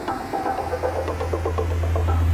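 Electronic intro sound design: a steady low hum with a rapid flicker of glitchy pitched tones above it.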